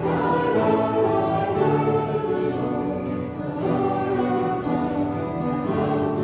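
Congregation singing a song together to acoustic guitar accompaniment.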